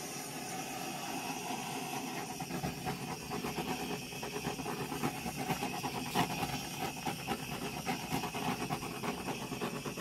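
Handheld butane blowtorch burning with a steady hiss. From about two seconds in, a fast, uneven crackle rides on the hiss; the torch is not running the way it normally does.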